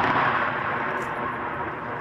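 Rolling thunder sound effect: a long, loud rumble that slowly fades.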